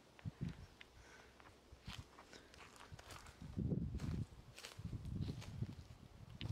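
Faint, irregular footsteps on dry ground with small crackles and scuffs, heaviest a little past the middle.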